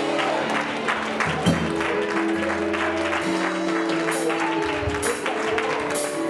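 Sustained keyboard chords with shifting bass notes, under a congregation clapping and applauding.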